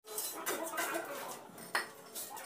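Steel trowel scraping and scooping wet cement mortar in a metal mortar pan, with a sharp clink of the trowel against the pan near the end.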